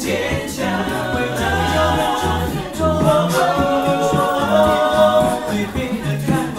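Male a cappella group singing in close harmony, with a low bass voice under long held chords.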